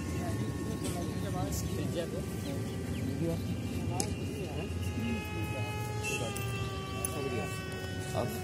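Electric motor and propeller of a foam RC plane in flight, a steady high buzzing whine that drops slightly in pitch twice as the throttle eases. Wind rumbles on the microphone underneath.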